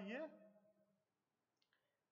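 A single drawn-out spoken word that fades within the first second, then near silence broken by two faint, short clicks close together near the end.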